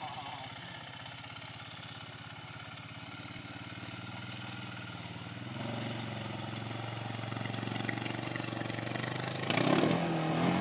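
ATV engine running at low throttle as the quad wades into a pond, getting louder about halfway through and revving up sharply near the end as the rider gives it throttle in the water.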